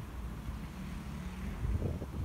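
Wind noise on the microphone: a steady low rumble.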